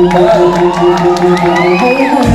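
Dance music in a stretch with the bass dropped out, a short note pulsing about four times a second, while a crowd of guests cheers and whoops over it.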